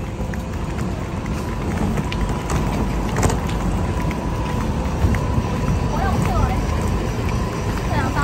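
Steady rumble of a hard-shell suitcase's wheels rolling over rough pavement, over the low hum of idling buses.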